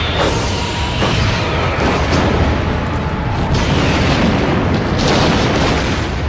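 Film sound effect of a starship, a Klingon Bird-of-Prey, exploding under torpedo hits: a sustained deep rumble with several sharper blasts about a second apart.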